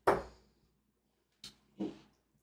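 A steel-tip tungsten dart striking a bristle dartboard: one sharp thud right at the start that fades within half a second. Near the end come a faint click and a short, slightly louder handling sound.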